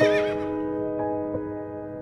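A horse whinnies briefly at the very start, over soft instrumental music of held chords.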